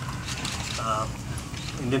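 A man's speech pauses between phrases, with a short vocal sound about a second in and speech starting again near the end. A steady low hum runs underneath.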